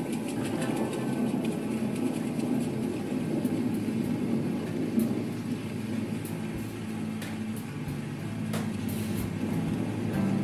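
Live blues band playing an instrumental passage: guitar over a drum kit, with a few sharp cymbal hits.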